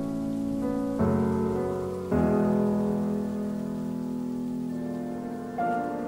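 Downtempo chill-out music: soft sustained keyboard chords, with a new chord struck about a second in, again at two seconds, and once more near the end.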